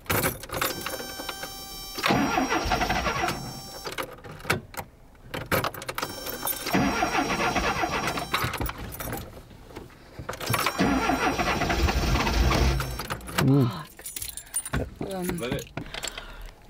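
Volkswagen Westfalia camper van's starter being cranked in several attempts of about two seconds each, the engine failing to catch: a flat battery.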